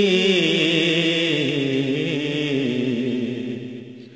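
A man's voice singing a naat unaccompanied, holding a long, wavering, drawn-out note that slides slowly down in pitch and fades out near the end.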